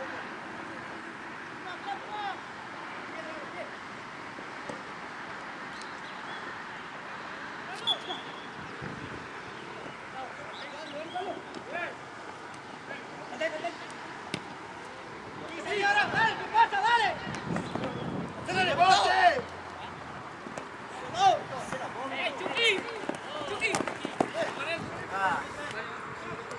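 Shouts and calls from football players on the pitch, coming in scattered bursts that are loudest a little past the middle and again near the end, over a steady outdoor background hiss.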